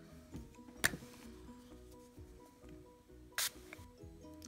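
Soft background music with a slow melody of held notes, with a sharp click about a second in and a short hiss near the end.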